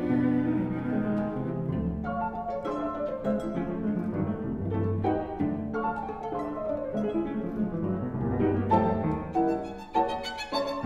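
A piano trio playing classical chamber music: the cello bows low sustained notes and the violin plays above it, over a Steinway grand piano.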